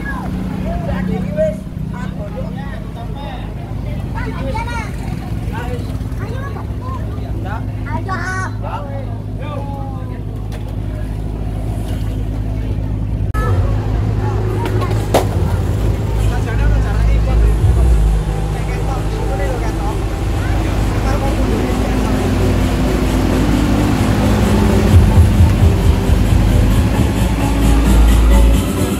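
Deep bass from a truck-mounted loudspeaker stack playing music, growing louder toward the end, with crowd voices over the first half.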